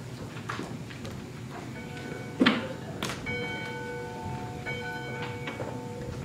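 Church bell rung by its rope from inside the building, heard faint and muffled through the insulated ceiling: several strokes a second or so apart, each one ringing on. A single sharp knock sounds in the room a little before the ringing gets loud.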